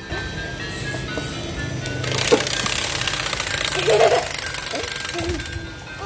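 Instrumental children's music under a rapid, buzzing rattle from a bath toy's small motor, which lasts about three seconds in the middle.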